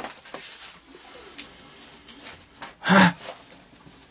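Faint knocks and rustling, then about three seconds in a person's short, sharp gasp.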